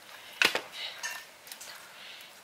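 Metal spoon clinking sharply against a metal pizza pan about half a second in, followed by soft scraping as it spreads tomato sauce over the crust.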